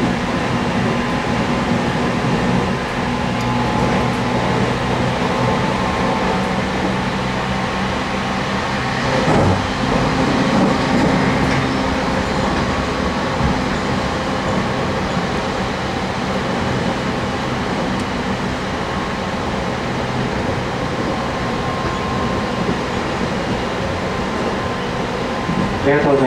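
Cabin noise of a JR Kyushu 813 series electric train running at speed: a steady rumble of wheels and running gear with a low hum, and a single knock about nine or ten seconds in.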